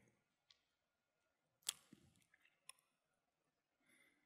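Near silence with a few faint, short clicks, the clearest a little under two seconds in.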